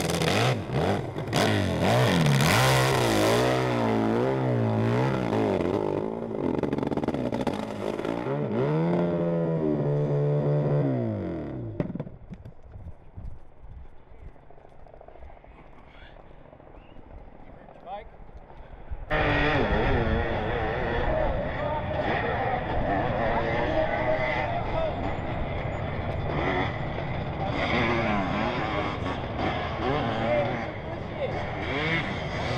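Pro hillclimb motorcycle engine revving hard, its pitch surging up and down as the rear wheel spins and bites on the climb, then winding down about ten seconds in. After a quieter stretch, another hillclimb bike's engine starts loud and abruptly about 19 seconds in, revving unevenly as it climbs.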